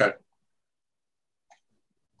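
The end of a man's spoken "okay" at the very start, then near silence on a noise-gated call line, broken by one faint short blip about one and a half seconds in.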